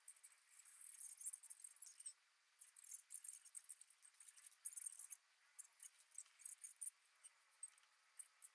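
Faint, crisp, irregular clicks and rustles of a wooden spoon stirring and scooping mixed rice in a wooden bowl.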